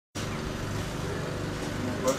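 Porsche 911 rally car's flat-six engine idling steadily at a constant pitch.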